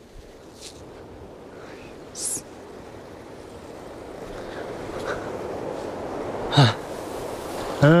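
A person breathing hard, winded from climbing a steep slope at high altitude. The breathing grows louder, with a loud gasping breath near the end and then a short "mm".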